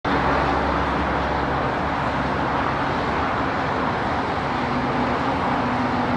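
Steady road traffic noise from a highway, cars and trucks passing in a continuous wash with no single vehicle standing out.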